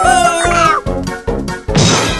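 Upbeat cartoon background music with a high-pitched cartoon character vocal that is held, then slides down about half a second in. Near the end comes a sudden noisy crash-like burst.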